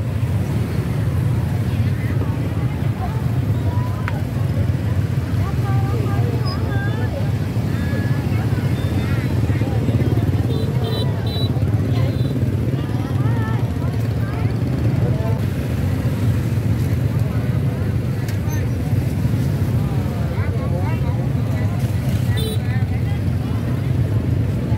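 Honda motorbike engine running steadily at low speed as a low, even hum, with many voices chattering around it in a busy market.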